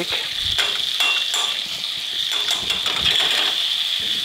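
Bacon and leeks frying in a pan with a steady sizzle, with scattered short scrapes and taps as garlic is scraped off a metal rasp grater into the pan.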